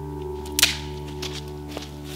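A wood campfire crackling: one loud, sharp pop about half a second in, then a few smaller pops, over soft ambient music with long held notes.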